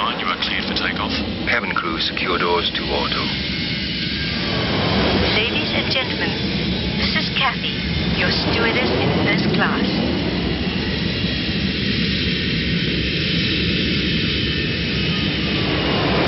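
Jet airliner engine noise: a steady rumble and hiss with a slowly gliding tone partway through, under indistinct voices.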